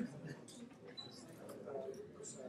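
Indistinct background chatter of several people talking quietly at once, with scattered faint ticks.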